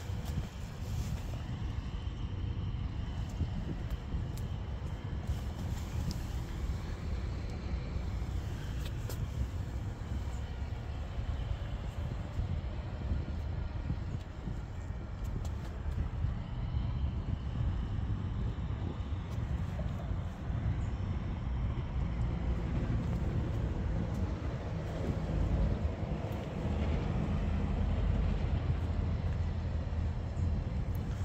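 Steady low outdoor rumble and hiss with no distinct events.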